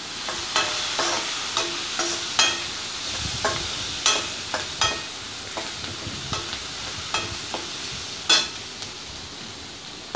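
Diced vegetables sizzling as they fry in oil in a kadai, stirred with a spoon that scrapes and knocks against the pan every half second to a second. The loudest knock comes near the end.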